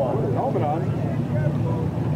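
Figure-8 race cars' engines running out on the track, a steady low drone with some faint rising and falling revs early on.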